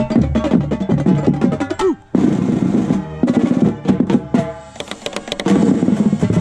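A drum and bugle corps playing its show music: marching bass drums and tenor drums striking over sustained ensemble notes. The music breaks off briefly about two seconds in, then comes back in with rapid drum strokes.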